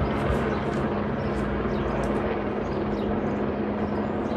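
Police helicopter overhead, its rotor and engine making a steady drone.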